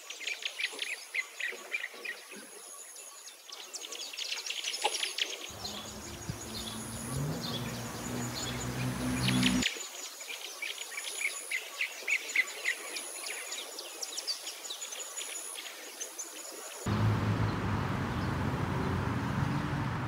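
Songbirds chirping and singing, with a thin high repeating buzz above them. A low rumble joins in twice, about a third of the way in and again near the end.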